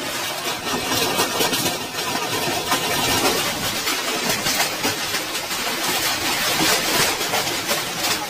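Heavy hail pelting tin roofs and the ground: a loud, unbroken roar made of countless small rattling hits.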